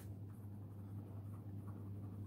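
Faint scratching of a pen writing on paper, over a low steady hum.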